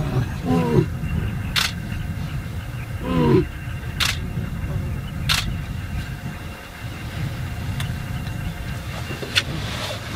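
Lion calling: two short moaning calls that fall in pitch, one about half a second in and one about three seconds in, over the low steady rumble of an idling vehicle engine. A few sharp clicks are heard between the calls.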